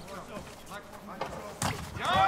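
A kickboxing knee strike landing: one sharp thud about one and a half seconds in, under faint voices.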